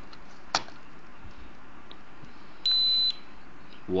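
Toy drone transmitter beeping once, a single high electronic beep of about half a second near the end, while it is powered on and bound to the drone. A short click comes about half a second in.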